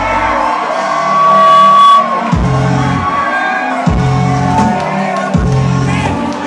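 Live hip-hop music over a concert PA in a large hall, with crowd voices shouting over it. The deep bass drops out about half a second in, then comes back about two seconds later as heavy bass hits roughly every one and a half seconds.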